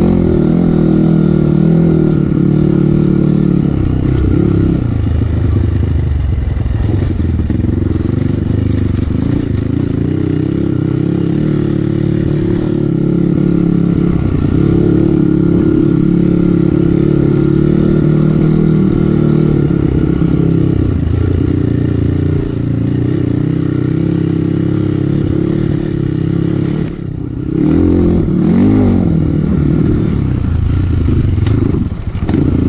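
Kawasaki KLX dirt bike's single-cylinder four-stroke engine running under way, heard close up from the bike, revs rising and falling with the throttle over rough ground. Near the end the revs drop briefly, then climb again with a wavering pitch.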